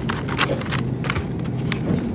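Clear plastic strawberry clamshell boxes clicking and crackling as they are lifted and handled, a few sharp clicks over a steady low background hum.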